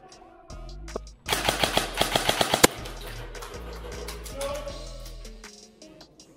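Airsoft electric gun firing one rapid full-auto burst about a second and a half long, over background music.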